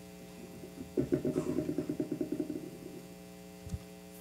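Steady electrical mains hum from the church sound system. About a second in, a low, rapid fluttering sound of about ten pulses a second comes in and fades out over about two seconds.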